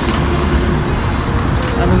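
City street traffic: a steady low rumble of passing cars, with a man's voice coming in near the end.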